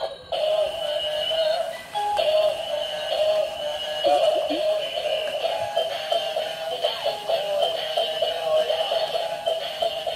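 Dancing Iron Man robot toy playing its tinny electronic music with a synthesized singing voice. The music breaks off briefly at the start and dips for a moment just before two seconds in.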